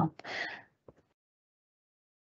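A speaker's short breath in, followed by a faint mouth click, then dead silence.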